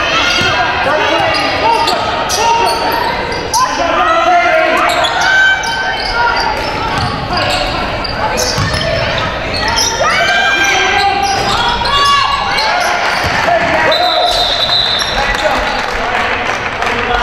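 Basketball being dribbled on a hardwood gym floor during live play, with players and spectators calling out over one another in an echoing gymnasium.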